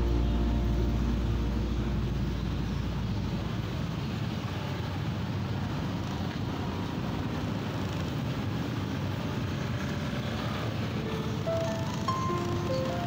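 Steady traffic and road noise heard from a slowly moving scooter in busy street traffic. Background music fades out in the first couple of seconds and comes back near the end.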